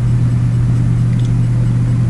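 A steady low hum with a rumble beneath it, unchanging throughout.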